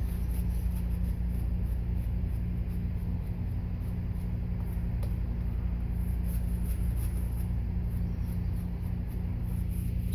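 Shaving brush being worked over soap lather on the face, a soft continuous swishing while water is worked into a lather that is still a bit pasty, over a steady low hum.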